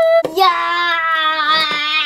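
A young child's voice holding one long sung note at a steady pitch for nearly two seconds.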